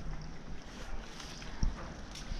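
Low, uneven rumble of wind on the microphone and handling of a hand-held camera while walking, with a soft thump about one and a half seconds in.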